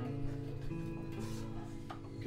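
Acoustic guitar played solo, its chords ringing on between sung lines.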